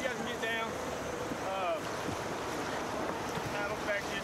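Steady rush of river current around a whitewater raft, with wind noise on the microphone.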